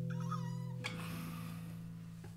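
Nylon-string flamenco guitar chord ringing out and fading. A short, high gliding squeal comes in the first second, and a soft click just under a second in partly damps the strings, leaving quieter notes to die away.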